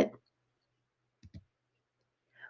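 Near silence broken by two faint clicks in quick succession about a second in: a computer mouse clicked to advance the page of an on-screen book.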